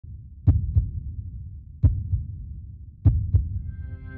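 Heartbeat sound effect: three paired low thumps in a lub-dub rhythm, about one pair every 1.3 seconds, with a faint music drone fading in near the end.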